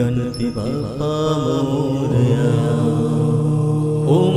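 Devotional Hindu mantra song to Ganesha: chanted music with long held notes over a steady low backing drone.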